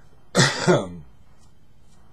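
A man coughs to clear his throat: a short double cough about half a second in, two quick bursts about a third of a second apart.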